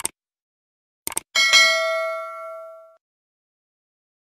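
Subscribe-button animation sound effect: a click, then about a second later a quick double click followed by a bright notification-bell ding that rings out and fades away over about a second and a half.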